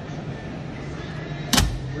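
A hinged lid on a boat's console bait station and tackle compartment is swung shut, closing with one sharp thump about one and a half seconds in.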